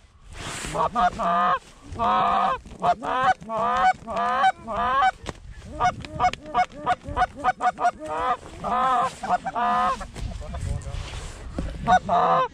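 Canada goose calling: loud, close honks and clucks in quick runs of several calls a second, from the hunters' short-reed goose calls or incoming geese.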